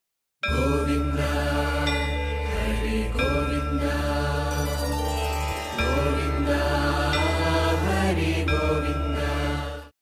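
Devotional intro music: a chanted mantra over a sustained low drone. It starts about half a second in, dips briefly about halfway through, and fades out quickly just before the end.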